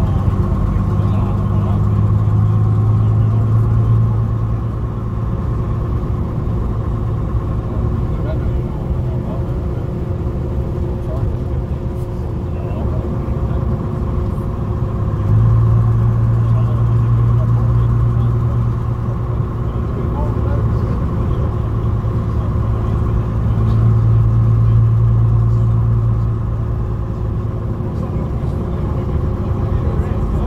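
Interior sound of a Bristol RELH coach's rear-mounted diesel engine under way, a steady low running note that swells louder in several stretches as it pulls.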